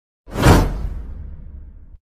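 Whoosh sound effect on an animated subscribe button: a loud sweep that starts suddenly about a quarter second in and falls from high to low, trailing into a low rumble that cuts off abruptly.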